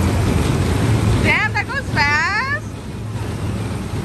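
Steady low hum and rumble of a spinning kiddie car ride's machinery. A high-pitched voice cries out twice in the middle.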